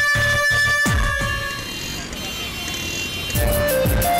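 Dramatic background score: held tones over a run of falling bass swoops, easing off for a moment, then a rhythmic beat with melody notes coming in about three seconds in.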